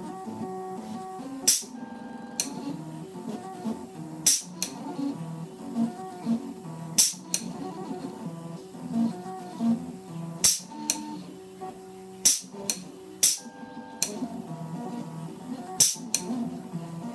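Background music led by a plucked guitar, with sharp clicks every two to three seconds.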